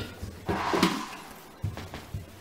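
A small child's footsteps on a wooden floor, a few light thumps, with a brief noisy clatter about half a second in.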